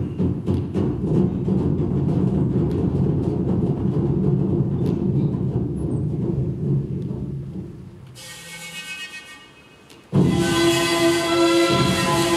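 A stage sound effect: a loud, dense low rumble with many quick clicks, fading out about eight seconds in. About ten seconds in, music with sustained notes starts suddenly.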